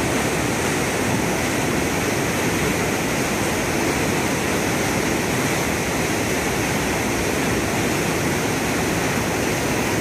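Fast, high river water pouring in whitewater over a short falls through a narrow rock gorge into a plunge pool: a steady, unbroken rush that does not rise or fall.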